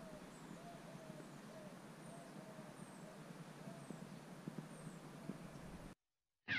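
Birds calling in a garden: a low call repeated about every half second, with thin, high, falling chirps about once a second, over faint steady outdoor background noise.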